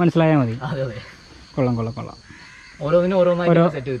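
A man talking in short phrases with pauses between them.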